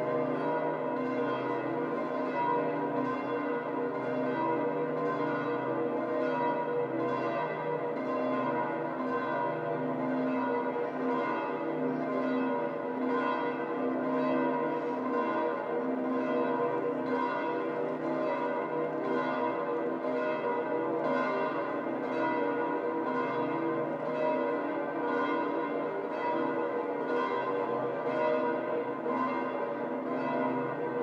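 Bells of St Peter's Basilica pealing in a continuous, even run of strikes, their tones ringing on and overlapping.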